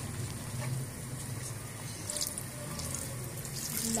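Battered potato slices deep-frying in oil in a metal wok over a low flame: a steady sizzle with scattered light crackles, the pakoras part-way to light golden.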